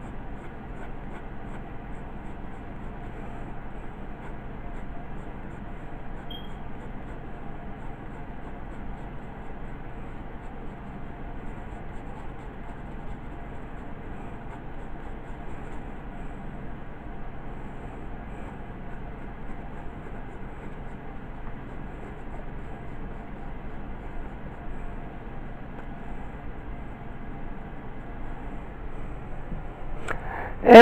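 Graphite pencil scratching on drawing paper in repeated hatching strokes, over a steady low hum.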